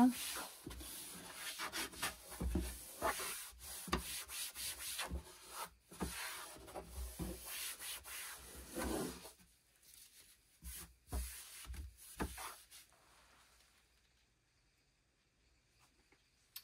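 A disinfecting wipe rubbed back and forth across the bottom of an empty drawer: a run of irregular scrubbing strokes that thins out and stops about three seconds before the end.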